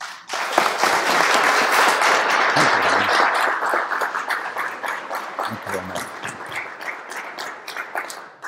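Audience applauding: clapping swells up within the first second, is loudest over the next couple of seconds, then gradually thins out and dies away near the end.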